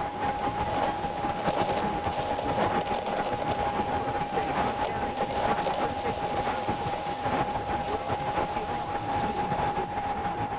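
Steady rumbling noise with one steady tone running through it, unbroken and even in level, fading in at the very start.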